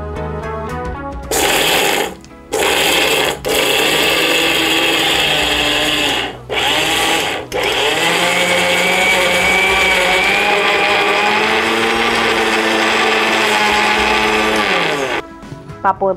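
A kitchen mixer grinder with a stainless-steel jar, grinding the green keerai vadai batter to a coarse paste. It runs in four short pulses with brief stops between, then one long run of several seconds that cuts off near the end.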